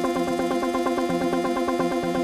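Live band music: a fast, even run of repeated pitched notes over a steady pulse.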